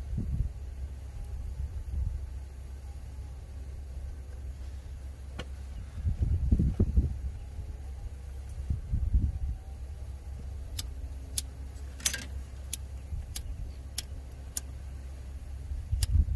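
Steady low rumble with some handling noise, then a lighter clicked about eight times in a row over three or four seconds as it fails to catch, to heat shrink tubing on a solenoid wire connector.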